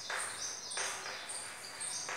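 Chalk scratching on a blackboard as words are written, strongest in the first second. Short, repeated high chirps of small birds run behind it.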